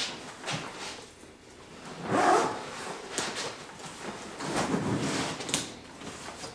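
Rustling and rummaging in a soft duffel bag, with a louder rustle about two seconds in and a few light clicks near the end.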